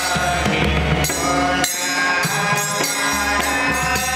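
Pakhawaj barrel drum played by hand in a steady rhythm, with jhaanjh hand cymbals ringing and a group of men singing a dhrupad devotional song.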